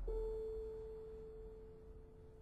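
Piano quartet in a quiet passage: one held note, a little above middle C, sounds suddenly at the start and then fades slowly away.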